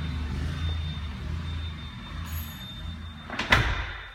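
A steady low rumble, then a single loud bang about three and a half seconds in, as of a door.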